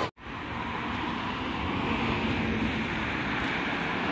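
Road traffic: cars driving past on a street, a steady rush of engine and tyre noise.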